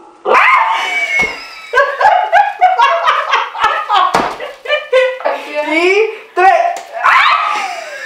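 Two women laughing hard, with high-pitched shrieks and squeals breaking through the laughter.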